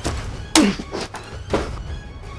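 Two heavy thuds about a second apart, the first and louder one trailing a short falling tone, over a music score.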